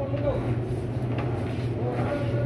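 Supermarket background sound: a steady low hum with indistinct voices of other people talking.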